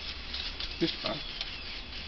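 Steady low hum and hiss of room noise, with a brief murmured 'uh' about a second in.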